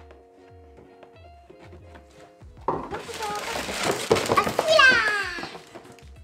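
Soft background music with a steady beat. About two and a half seconds in, a child's high-pitched voice sets in over a noisy rustle and runs for about three seconds.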